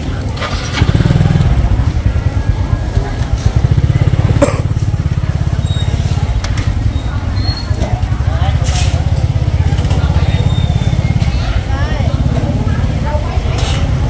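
Small motor scooter engine running at low speed, a steady low rumble that grows louder about a second in as the bike moves on, with market chatter around it.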